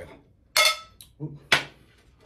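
Dinner plates clinking against each other and the tabletop as they are handled and lifted, three sharp clinks about half a second apart.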